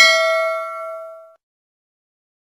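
A single bell-like ding sound effect, loudest at the start and ringing out in a few steady tones. It fades away about a second and a half in.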